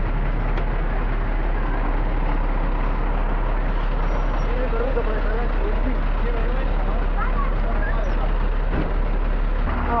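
Diesel engine of an Iveco semi-trailer truck idling steadily at close range, a constant low rumble with no change in pitch.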